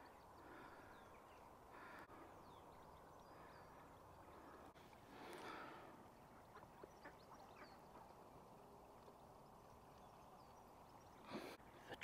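Near silence, with a few faint duck quacks, the clearest about five seconds in.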